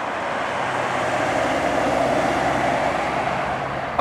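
Bentley Mulsanne Speed driving past: a steady rush of tyre and road noise that swells a little and then eases off.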